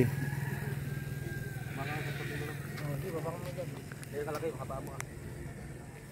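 A steady low engine hum, fading out about halfway through, with faint voices of people talking and one sharp click near the end.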